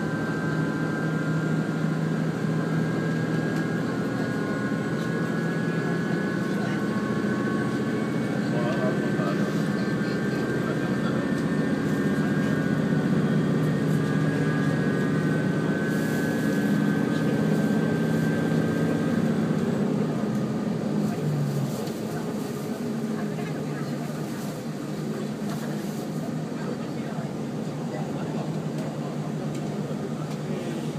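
Cabin of a JR Shikoku 2000 series tilting diesel railcar under way: the diesel engine and transmission drone with several steady tones over the rumble of the wheels on the rails. About two-thirds of the way through, the engine note drops away and only a quieter running rumble remains, as the power is shut off to coast.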